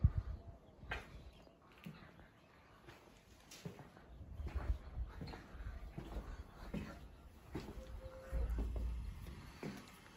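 Footsteps and light knocks of someone walking across a balcony and through a doorway. About eight seconds in there is a brief steady squeak, followed by a low rumble, as the metal-framed door is opened.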